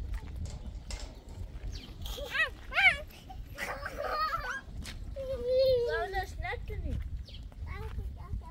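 Children's voices: a series of short, high-pitched calls and shouts, the loudest about two and three seconds in, and a longer falling call around the middle.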